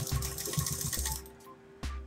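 A domestic sewing machine stitching in a fast run of needle clicks that stops about a second in, then one single click near the end. Background music with held notes plays underneath.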